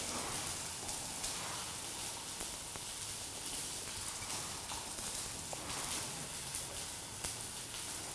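A steady, even hiss like faint sizzling, with a few light ticks as crumbled fresh cheese is sprinkled by hand over a plate of bean-covered tortillas.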